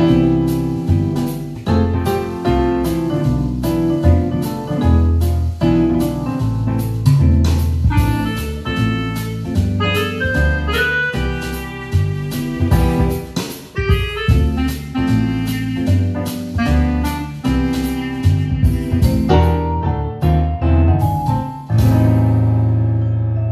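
Yamaha PSR-S770 arranger keyboard playing a jazzy tune on its acoustic jazz style: notes played live on the keys over the style's automatic accompaniment, with a steady beat and moving low notes.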